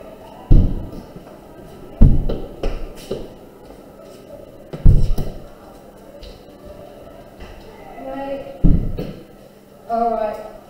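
Classroom windows being pushed shut one after another: four loud bangs, the first about half a second in, the next at about two and five seconds, and the last near the end.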